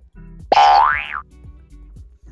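A comic sound effect: a single loud tone that glides sharply upward in pitch for under a second, starting about half a second in, over light background music with a low beat.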